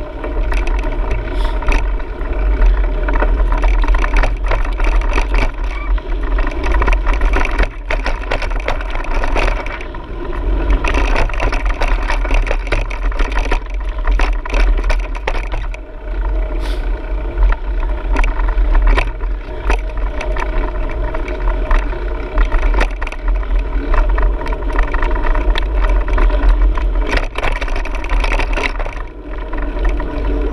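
Continuous travel noise from a GoPro riding fast along a dirt trail: a heavy low rumble of wind and jolting, a steady mechanical drone, and frequent small rattles and clicks from the rough ground. It eases briefly a few times, near the end most of all.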